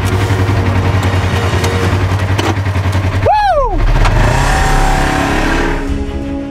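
Polaris RZR XP 1000 side-by-side's engine idling with a steady low note. About three seconds in there is a short whooping shout, and then the engine revs up.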